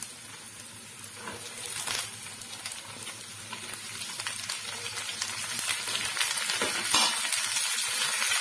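Cut sem fali (flat beans) sizzling as they go into hot mustard oil with fried onions in a kadhai, then stirred with a wooden spatula. The sizzle grows louder toward the end, with a few sharp clicks.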